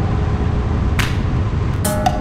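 Steady low rumble of a car driving, with instrumental background music over it and a sharp drum hit about halfway through.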